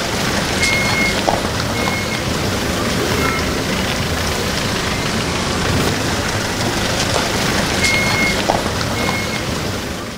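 Street traffic passing over a wet, potholed road: a steady mix of car, pickup-truck and motorcycle engines and tyre noise. A few short, high beeps sound now and then.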